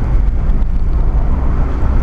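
Steady low rumble of a car on the move, heard from inside the cabin: engine and road noise with no other distinct event.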